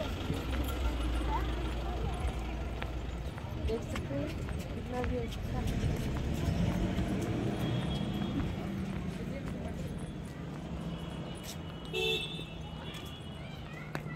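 Busy outdoor street ambience: indistinct voices of passers-by and vehicle noise, with a heavy low rumble over the first few seconds and a brief higher tone near the end.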